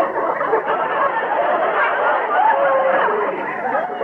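Live studio audience laughing, a dense continuous wash of many voices that eases off slightly near the end.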